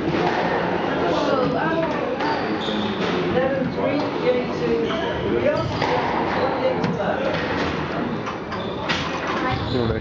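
Squash rally: sharp knocks of the ball off racquets and court walls about once a second, more frequent in the second half, ringing in the enclosed court, over a steady chatter of voices.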